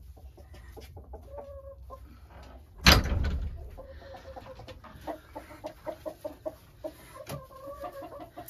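Chickens clucking, many short repeated notes, with a single loud knock about three seconds in.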